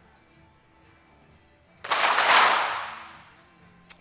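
A whoosh of noise about two seconds in that swells and then fades away over a second and a half, its hiss dying from the top down. One sharp crack of a .22 sport pistol shot comes near the end.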